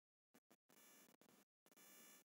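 Near silence: faint hiss of room tone that drops out to dead silence several times.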